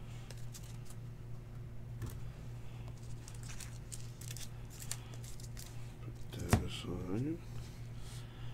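Trading cards being handled on a table: light clicks and slides as card stacks are squared up and moved, with one sharper tap late on. A steady low electrical hum runs underneath.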